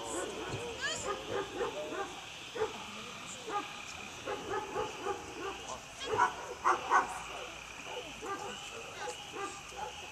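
A dog whining and yipping in quick, repeated short calls throughout, with a few louder, sharper calls about six to seven seconds in.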